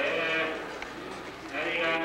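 A voice in a drawn-out, sing-song delivery that eases off about a second in and comes back strongly near the end.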